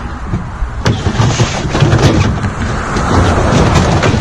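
Wind buffeting the microphone, with a few sharp knocks of gear being handled.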